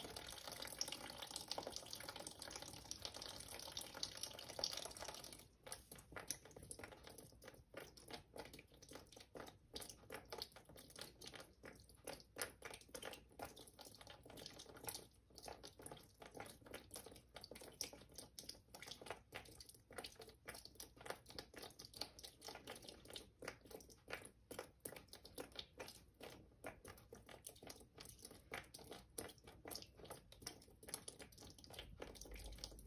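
Faint trickling and dripping of water running from a cup down a sand-filled stream table, steadier for about the first five seconds, then thinning to scattered irregular drips.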